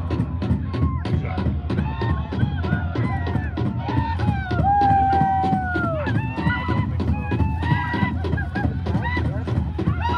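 Several high voices yelling and whooping, overlapping calls, with one long held cry a little before the middle that drops in pitch at its end. A steady low rumble lies under the calls.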